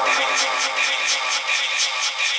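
Electronic dance music played live from DJ decks: a steady high percussive beat of about four strikes a second over synth layers, with the bass dropped out.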